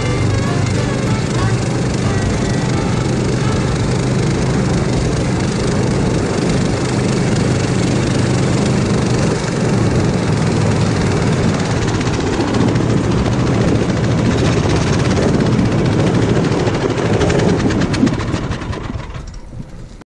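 Motorised snow tow's engine running steadily as it pulls a sled along a snowy road, with the rumble of the ride over the snow. The sound fades out over the last couple of seconds.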